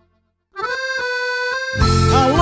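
Silence for about half a second, then an accordion holds a steady chord with a few light clicks, opening a sertanejo song. A fuller, louder band comes in just before the end.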